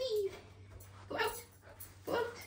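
A Newfoundland dog vocalizing briefly: a wavering whine at the start and a short bark-like burst about a second in.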